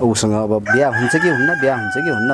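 Rooster crowing: one long held call that starts under a second in and sinks slightly in pitch.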